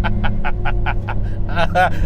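A man laughing nervously in short rapid bursts, about five a second, ending in a drawn-out 'oh', over the steady low drone of the Carver One's small 660cc Daihatsu engine and road noise.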